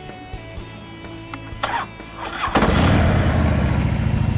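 A 2010 Harley-Davidson Road King's air-cooled 96 cubic inch V-twin starts up about two and a half seconds in, then keeps running.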